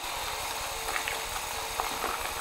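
DeWalt cordless drill running a paddle mixer through joint compound and water in a plastic bucket, a steady motor hum over the churning of a thin, watery mix.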